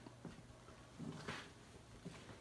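Quiet room with a faint steady low hum and a few soft knocks and rustles as a handheld camera is moved around.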